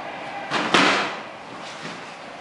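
A child's body landing with a sharp slap and rustle on a plastic-tarp-covered mat, about three-quarters of a second in, as he falls or rolls to the floor.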